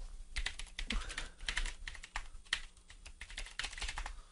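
Typing on a computer keyboard: a quiet run of quick, irregular key clicks.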